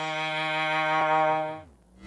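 A synthesized cello-like tone held on one steady pitch with a rich stack of overtones. It fades out about a second and a half in, its low note sliding down as it dies away.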